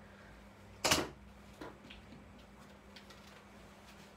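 A single sharp knock about a second in, then a fainter tap shortly after, like hard objects set down on a desk, over a faint steady hum.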